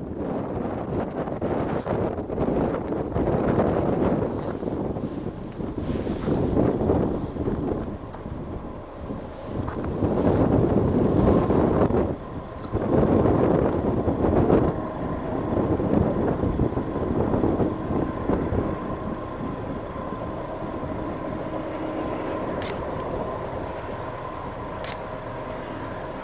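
Wind gusting on the microphone in loud surges, settling after about two-thirds of the way through into a steadier rumble. Through it runs the faint steady drone of an approaching Union Pacific diesel freight train's locomotives.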